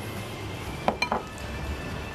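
Kitchenware clinking as it is handled: three quick sharp clinks a little under a second in, one of them ringing briefly.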